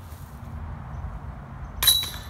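A disc striking a metal disc golf basket near the end: one sharp metallic clang with a brief jingling ring, the putt landing in. A low wind rumble on the microphone runs underneath.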